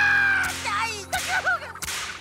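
A cartoon character's high-pitched cry and wavering laughter over a background music bed, with a short sharp swish sound effect near the end.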